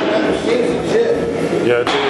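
Indistinct background voices over a steady hum, with no ball or glove impact.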